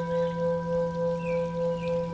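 A bell-like tone, struck just before and ringing on steadily, with a deep hum beneath it and a slow, even pulsing waver a few times a second. Two faint short chirps sound higher up in the middle.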